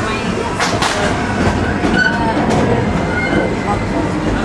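Narrow-gauge park railroad train rolling along, heard from an open passenger car: a steady rumble and rattle of the wheels and car, with a pair of sharp clacks a little under a second in.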